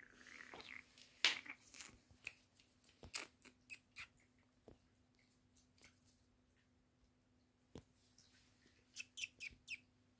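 Faint, irregular clicks and soft rustles, bunched in the first few seconds and again near the end, over a low steady hum.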